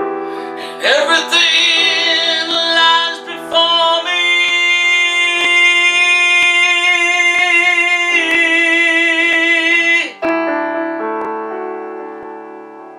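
A man singing two long, wavering held notes over piano accompaniment. About ten seconds in the voice stops and a piano chord rings on and fades.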